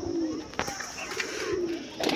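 Domestic pigeons cooing in a loft: a low, soft coo that rises and falls about a second in. A single sharp click comes shortly after the start.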